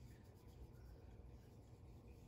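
Near silence: quiet room tone, with faint scratching of a watercolor brush stroking paint onto paper.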